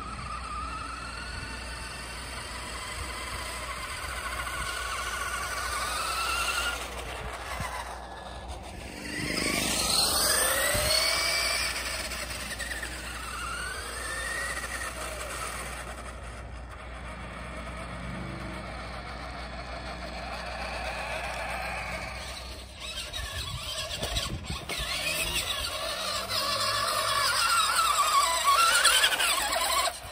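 Radio Shack 4X4 Off Roader RC truck driving on asphalt, its battery-powered electric motor and gears whining, the pitch rising and falling as it speeds up and slows. There is a sharp dip and climb in pitch about nine seconds in, and it is loudest about ten seconds in and near the end.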